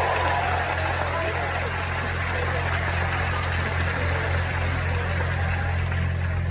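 A steady low mechanical hum, like an engine idling, under an even background hiss, with no speech.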